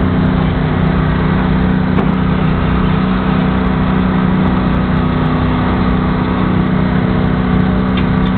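An idling truck engine gives a steady, low hum that holds one even pitch.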